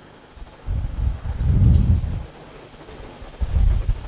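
Muffled low rumbles of air buffeting the microphone, two long ones about two seconds apart, with no speech.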